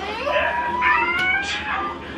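A high, drawn-out wailing cry that glides up and then holds steady for over a second, with a second, higher cry overlapping it about a second in.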